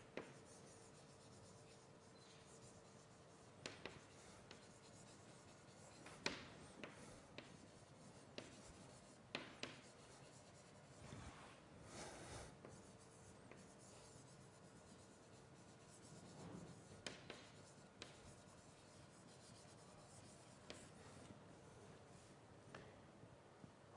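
Faint writing on a lecture board: scattered taps and short scratching strokes in a quiet room.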